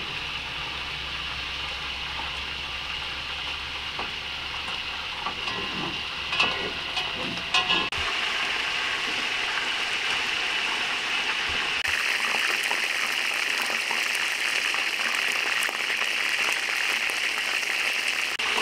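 Chicken pieces deep-frying in oil in a large pot: a steady sizzle that becomes louder and brighter about twelve seconds in. The first part is a steady hiss with a few faint clicks.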